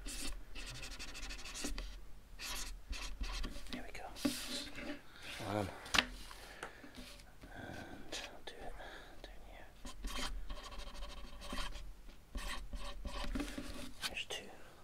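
Pen scratching a signature onto a cardboard CD digipak cover: a run of short rubbing, scratchy strokes with pauses between them, and quiet murmured voices now and then.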